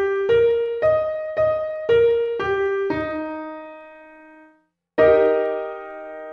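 Piano playing an E-flat major arpeggio down from its top (B-flat, high E-flat struck twice, B-flat, G, E-flat), one note about every half second, the last held and fading. About five seconds in, an E-flat major triad in root position is struck together and left to ring.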